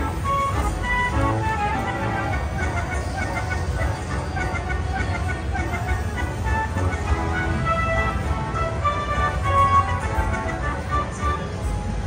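Buffalo Gold slot machine's big-win celebration music playing while the win meter counts up: a continuous run of short, bright chiming notes over a steady low rumble.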